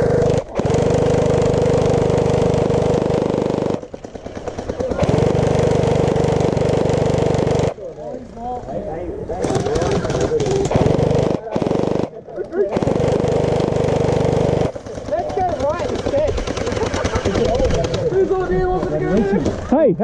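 An electric gel blaster firing long full-auto bursts, its gearbox running with a steady whine. There are three bursts of about two to three seconds each, starting near the beginning, about five seconds in and about thirteen seconds in.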